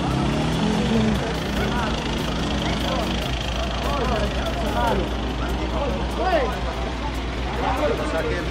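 A truck engine idling, a steady low hum, under indistinct voices.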